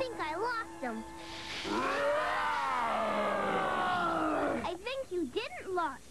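Cartoon character growls and yells voiced by actors, over chase music. There are short yelps, then one long yell that rises and slowly falls, then more short growling calls near the end.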